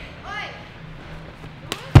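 A body landing on a padded foam crash mat: one heavy, dull thud near the end, just after a sharp click.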